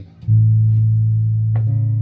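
Ernie Ball Music Man Bongo electric bass plucked on one low note, an F sharp, that rings on. About one and a half seconds in, a second note is plucked over it.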